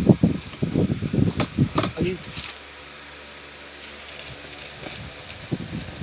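A person talking for the first two seconds or so, with two sharp clicks among the words, then a few seconds of steady low hum before talking resumes near the end.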